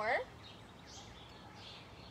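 Faint birds chirping over a low, steady background hiss.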